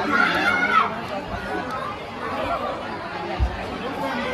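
Several people chatting at once in a large hall, overlapping voices with no one voice standing out. A brief low thump comes about three and a half seconds in.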